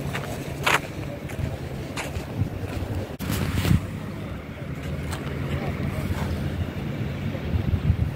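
Wind noise on a handheld camera's microphone while walking, with a few short knocks, the loudest at under a second in and near four seconds in.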